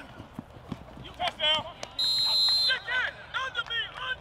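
A referee's whistle blown once, about two seconds in, a single steady high-pitched blast lasting under a second. Shouting voices come before and after it.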